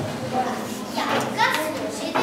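Several children's voices chattering at once in a large hall, with one high child's voice standing out about halfway through.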